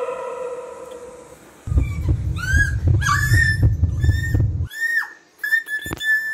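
Horror-film sound effects: an eerie held tone fades out, then a run of short, high screeching cries that bend down in pitch sound over a low rumble. The rumble cuts off suddenly about three-quarters of the way through, while the cries carry on almost to the end.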